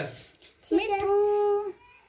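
Rose-ringed parakeet giving one held, even-pitched call about a second long, starting with a quick upward rise.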